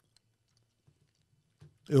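Near silence with a couple of faint, short clicks, then a man's voice starts speaking near the end.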